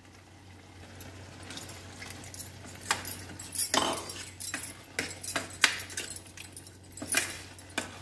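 A steel ladle scraping and clinking against a stainless steel pan as a thick banana flower dal is stirred: irregular scrapes and taps that grow louder after the first second, a few sharper clinks standing out, over a faint steady low hum.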